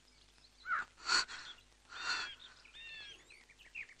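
Birds calling in short chirps and whistled notes, several in quick succession in the second half, with one brief breathy sound about a second in.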